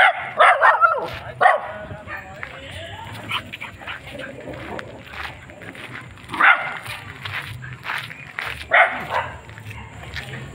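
A dog barking in short bursts: several in quick succession in the first second, then single barks about one and a half, six and a half and nine seconds in.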